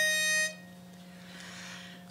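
A pitch pipe sounding one steady held note, giving the starting pitch for an a cappella quartet; it stops about half a second in, followed by a quiet pause before the singing.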